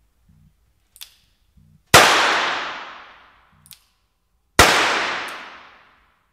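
Two revolver gunshots about two and a half seconds apart, each ringing out with a long echoing decay, and a short click about a second before each shot.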